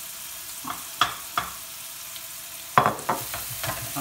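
Onions and garlic frying in oil and butter in a non-stick pan, a steady sizzle. A silicone spatula clicks against a plate a few times in the first half and knocks against the pan in a louder cluster about three seconds in.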